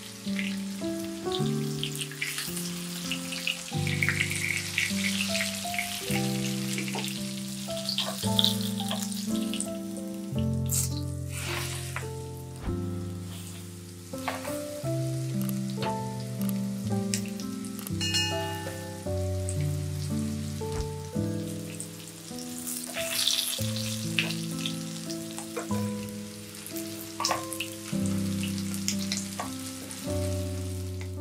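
Breaded cutlets shallow-frying in oil, a steady sizzle with an occasional click of tongs against the pan. A gentle melody of sustained notes plays over it.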